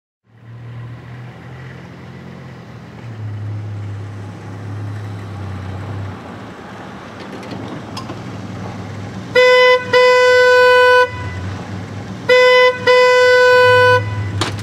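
Minivan idling with a low engine hum, its horn honked twice, each time a short tap followed by a long blast, starting a bit past the middle. The honking calls someone out of the house.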